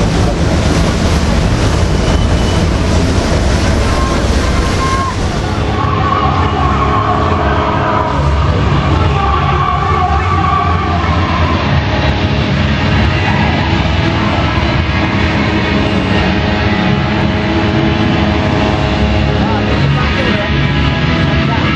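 Loud, dense din of voices and open-air noise on a ship's deck. About six seconds in, music with long held tones comes in underneath.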